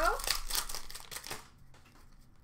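A hockey card pack's wrapper crinkling and tearing as it is ripped open by hand, a dense crackle for about the first second and a half.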